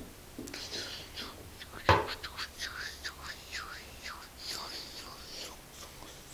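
A person whispering in short bursts, with a sharp knock about two seconds in.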